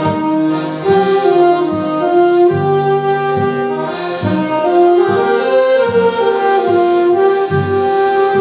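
Saxophone playing a slow melody of long held notes over accordion and acoustic guitar accompaniment, the lower chord notes changing in a steady rhythm.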